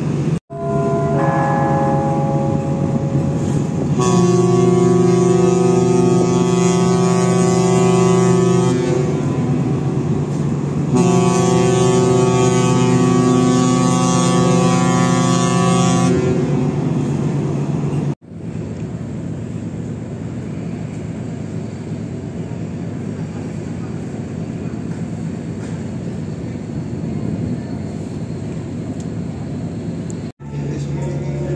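Passenger ship's horn on the Pelni liner KM Labobar sounding two long, loud blasts of about five seconds each, a couple of seconds apart, as a signal ahead of departure. It is followed by a steady rushing background noise.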